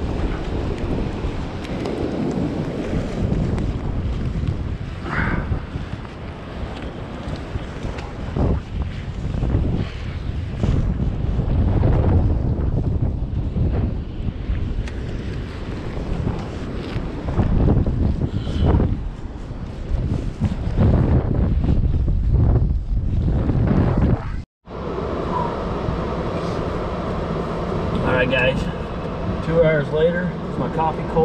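Wind buffeting the microphone in gusts over surf breaking on a beach. It cuts off suddenly about 24 seconds in, giving way to a steadier, quieter sound inside a car.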